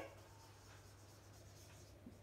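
Near silence: room tone with a low steady hum and the faint scratch of a marker writing on a whiteboard.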